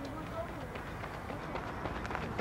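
Footsteps of a sprinter running on a worn stadium track, heard faintly over steady outdoor background noise with faint voices.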